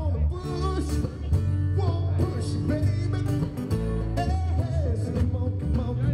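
Bluegrass band playing live on acoustic guitars and banjo, with a male voice singing the lead over them.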